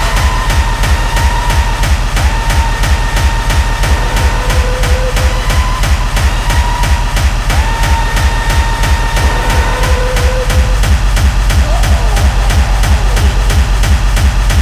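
Fast electronic dance music from a free-party tekno live set: a steady, driving kick drum with held synth tones that break off and come back over it.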